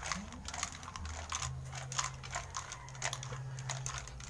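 Clear plastic tube with a red cap shaken by hand, its contents rattling in quick, irregular clicks: mixing the entries before a raffle draw.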